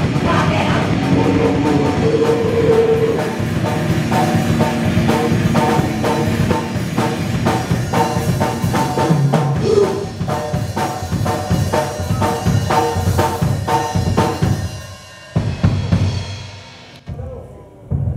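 Live raw punk / d-beat band, distorted electric guitar over fast, pounding drum kit (kick, snare and cymbals), played loud. Near the end the full-band playing stops, a few final drum hits land, and the sound rings out as the song ends.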